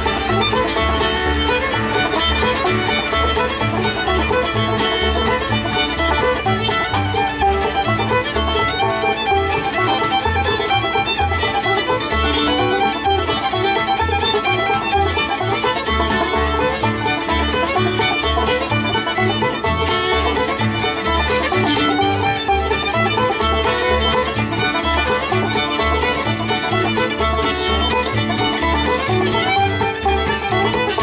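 Old-time string band jam: a fiddle carries the tune over a banjo, with an upright bass plucking a steady beat underneath.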